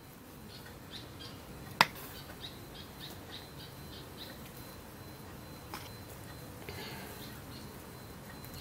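Faint bird chirps in the background, a short high note repeated about three times a second, with one sharp click about two seconds in and a few softer clicks from kitchenware being handled.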